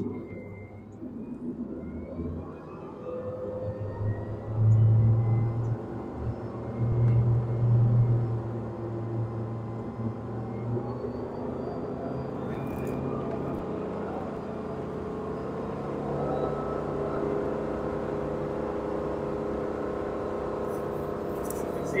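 Wake boat's 6.2-litre Raptor 440 V8 inboard pulling away with full ballast: the engine note rises over the first few seconds and is loudest around five to eight seconds in. It then settles to a steady run at about 11 mph surf speed, with the wake rushing behind the stern.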